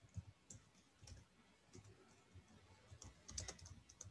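Faint, scattered keystrokes on a computer keyboard, with a quicker run of typing about three seconds in.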